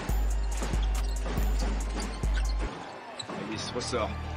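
Basketball being dribbled on a hardwood arena court in broadcast game audio, over background music whose deep bass beat thumps four times, about 0.7 s apart, and stops about two-thirds of the way in.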